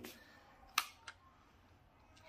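Two light clicks from a small plastic container being handled, a sharper one just under a second in and a fainter one shortly after, over quiet room tone.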